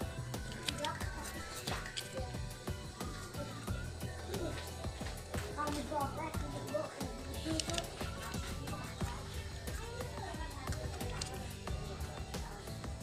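Background music with vocals at a moderate level, with a few faint clicks and scrapes from a utility-knife blade cutting a copper trace on a circuit board.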